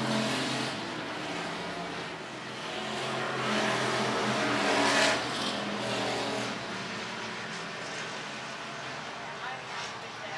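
Hobby stock race cars running in a pack on a dirt oval, their engines droning steadily. The sound swells as cars pass close, loudest about five seconds in, then fades as they move away.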